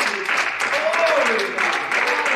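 A man's voice, drawn out and rising and falling in pitch, over rapid handclapping.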